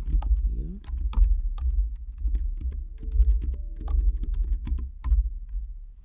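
Computer keyboard typing: an irregular run of key clicks, each with a low thud beneath it, as a terminal command is typed and entered.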